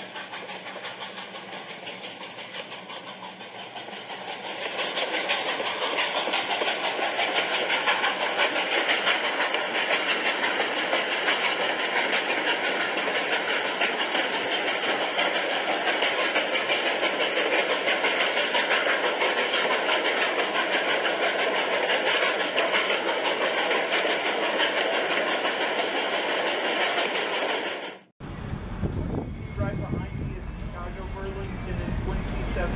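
A train running: a steady rushing noise that grows louder about five seconds in and cuts off suddenly near the end, followed by wind rumbling on the microphone.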